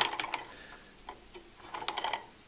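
A homemade axial flux alternator's spinning saw-blade magnet rotor ticks rapidly and unevenly. The rotor has no proper bearings and is not held down, so it rattles as it turns.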